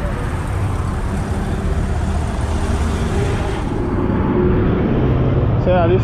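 Road traffic passing close by, including a motorcycle going past: steady engine rumble with tyre hiss, the hiss falling away about four seconds in.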